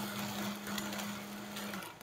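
Countertop blender running, blending a smoothie of yogurt, fruit and ice, with a steady motor hum and whir. The hum cuts out near the end and the whir dies away as the blender is switched off.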